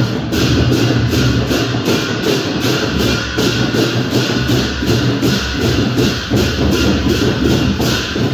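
Loud festival music with a fast, steady beat: sharp percussion strokes, cymbal-like in the upper range, about four a second over a dense mass of sound.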